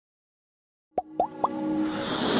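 Intro music starting about a second in with three quick rising pops, about a quarter second apart, followed by a swelling sustained tone.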